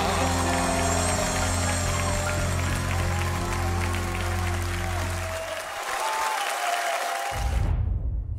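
A band's closing chord is held under audience applause and cheering at the end of a live vocal performance. The chord dies away about five and a half seconds in, and near the end the sound cuts abruptly into a short transition sting.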